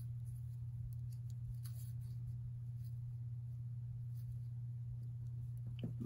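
A steady low hum with a few faint light clicks and taps of paper pieces being handled during cardmaking.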